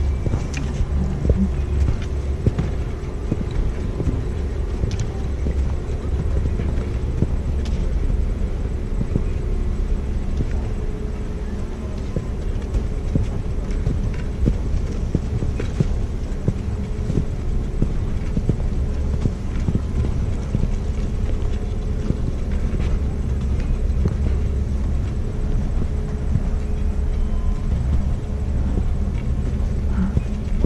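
Steady low rumble of wind buffeting an action camera's microphone, with irregular crunching and clicking as the wearer moves slowly over packed snow; a faint steady hum sits underneath.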